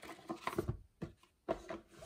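A boxed tarot deck being handled on a cloth-covered table: a few soft knocks and rustles of the cardboard box and cards.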